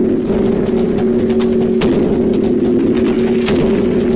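Audio of an animated subscribe end card: a steady low synthetic drone held on two notes, with several sharp click-like hits over it.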